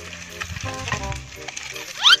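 Dry sticks and twigs clattering and clicking as they are gathered by hand, over background music with a steady bass line.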